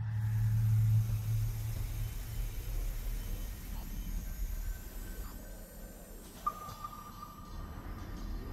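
Dark ambient drone soundtrack: a deep hum swells in at the start and fades over the first two seconds, over a steady hiss-like wash with faint thin high tones. A thin steady tone enters about six and a half seconds in.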